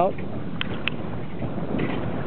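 Steady rushing of wind on the microphone and water moving along a small sailboat's hull as it rides through swells, with two faint clicks a little after half a second in.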